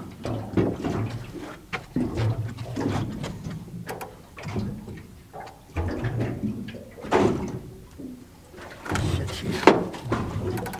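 Irregular knocks, clicks and handling noises of fishing gear on a boat deck while a live bait is rigged, over a low, uneven rumble.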